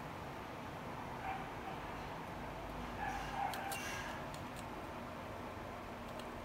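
Quiet room tone with a few faint clicks of metal tweezers against a power-window switch circuit board about three and a half to four and a half seconds in, and a faint distant animal call around three seconds in.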